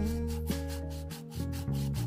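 A finger rubbing and sanding around the inside of a small bamboo cup in repeated scratchy strokes, heard over background music.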